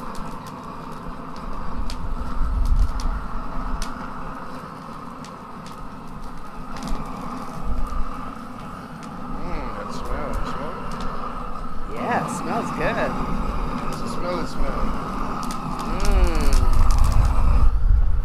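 A hand-held propane torch runs steadily as its flame is played over chiles on a grill grate to blister them. It swells louder about two seconds in and again near the end.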